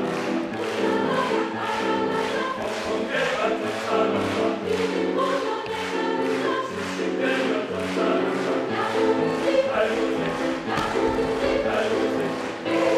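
Mixed choir of men's and women's voices singing with piano accompaniment, to a brisk steady beat.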